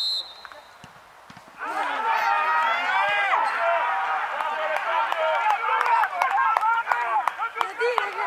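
A short referee's whistle blast for the penalty kick, then about a second and a half of quiet. After that, many men on the pitch shout and call out loudly over one another.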